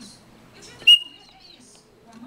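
Chopi blackbird (pássaro-preto) giving one loud whistled note that starts abruptly about a second in and holds briefly, with faint chirps around it.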